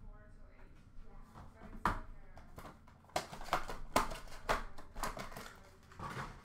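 Trading-card boxes and wrappers being handled: a run of sharp taps, knocks and crinkles that starts about two seconds in and is busiest in the second half.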